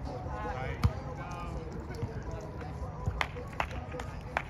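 Volleyball hit by hand during a rally: one sharp slap about a second in, then a few lighter knocks near the end.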